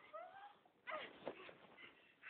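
A frightened young woman whimpering: a short rising whine, then a falling one about a second in.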